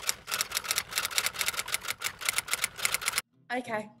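Typewriter-style clicking sound effect, a fast even run of about ten clicks a second that cuts off a little after three seconds in. A brief snatch of a voice follows near the end.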